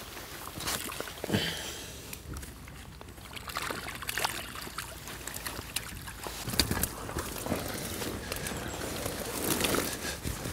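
Lake water sloshing and splashing as a mesh weigh sling full of small fish is lowered in and tipped out to release the catch, with a few short splashes and knocks scattered through.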